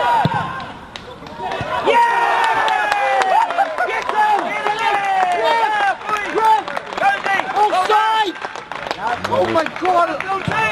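Indistinct shouting from players across a football pitch, many overlapping calls, one of them drawn out and falling in pitch, with no clear words.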